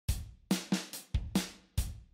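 Drum kit playing a bare beat on its own, with kick drum and snare hits and cymbal, a bit over three strikes a second, as the intro to a song's backing track.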